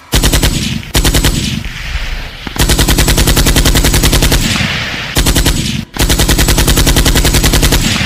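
Rapid bursts of machine-gun fire, about ten shots a second, in several strings broken by short pauses. Each shot carries a heavy, deep bass thump, typical of a gunfire sound effect used as a drop in a DJ bass-test mix.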